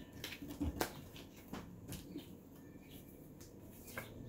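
Tarot cards being handled and drawn from a deck: a few light, irregular clicks and taps of card on card and on the table.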